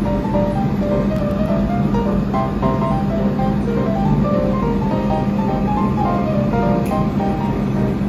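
Background music: a melody of short, separate notes over a steady low hum.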